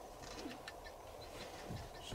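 Faint outdoor ambience with distant bird calls, among them a short low call like a dove's coo.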